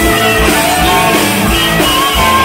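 Live southern rock band playing, with electric guitars and a drum kit keeping a steady beat.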